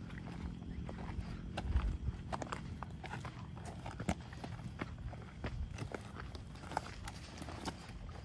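Footsteps crunching over dry leaves and twigs on a brushy trail, with irregular snaps and crackles of brush, over a low rumble with a louder thump a little under two seconds in.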